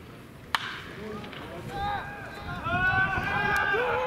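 A single sharp crack of a wooden bat hitting a pitched baseball about half a second in, followed by a crowd of spectators' voices that swell into shouting and cheering.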